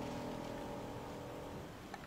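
A held piano chord ringing out and slowly dying away, fading out about three-quarters of the way through, leaving faint hiss.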